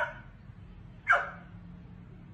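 Dog barking: two short barks about a second apart.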